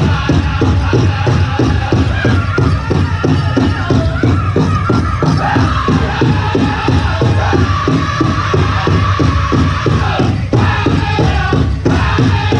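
Powwow drum group performing a chicken dance song: the big drum struck in unison in a fast, steady beat under high-pitched group singing, with a brief break near the end.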